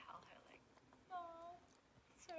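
A faint voice: a breathy whisper right at the start, then a short held vocal sound about a second in.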